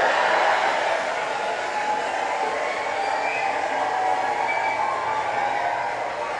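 Audience laughter and applause after a stand-up comedy punchline, a dense steady wash of noise that slowly dies down.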